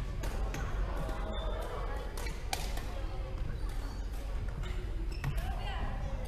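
Badminton rackets hitting a shuttlecock: sharp clicks a second or more apart during a rally, in a large sports hall, over background voices.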